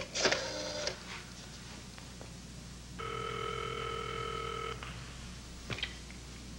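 Telephone ringback tone heard over the line: one steady, even buzz lasting nearly two seconds about halfway through, the sign that the call is ringing through at the far end. A short bit of voice comes at the very start, and faint clicks near the end.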